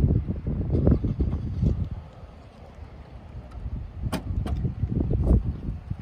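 Uneven low rumble of wind and handling on the microphone. About four seconds in comes a single sharp click as the car's power trunk lid unlatches and opens.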